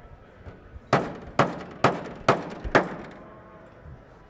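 Hammer striking a painted sheet-metal car panel five times, about two blows a second, each blow a sharp metallic bang with a short ring, denting the panel.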